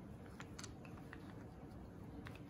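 Light clicks and taps of small plastic toys being handled by a toddler on a wooden table, several scattered ones with the clearest a little after half a second in.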